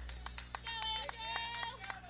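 Faint ballpark ambience picked up by the broadcast microphone between calls. A distant voice calls out on a held, high pitch through the middle, over a low steady hum and scattered faint clicks.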